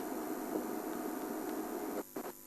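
Game-drive vehicle's engine idling: a steady, even hum under hiss, with no sudden sounds.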